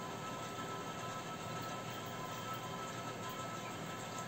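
Faint steady hiss with a thin, steady high hum underneath: room tone and recording noise, with no distinct event.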